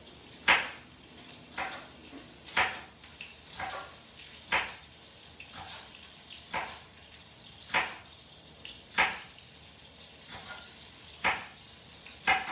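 Knife slicing jalapeños on a wooden cutting board: about a dozen sharp, separate chopping knocks, roughly one a second at an uneven pace, over a faint steady sizzle from salmon frying in oil in the pan.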